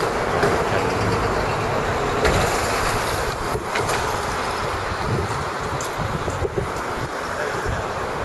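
Wind buffeting the camera microphone: an uneven, gusty rumble with hiss above it.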